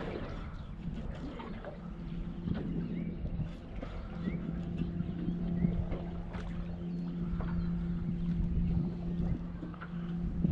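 A boat motor humming at a steady low pitch, becoming stronger about four seconds in, over a low rumble of wind and water.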